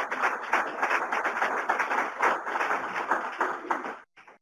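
Audience applauding, many hands clapping densely; it stops abruptly at the end, leaving a few last claps.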